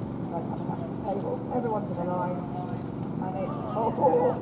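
Voices calling out, not close, over a steady low rumble.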